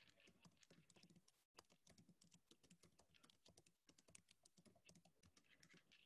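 Faint computer keyboard typing: irregular clicks several times a second, with a momentary cut-out in the audio about one and a half seconds in.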